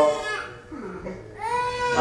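A baby gives a short rising wail about one and a half seconds in, in a brief gap where the liturgical chanting trails off.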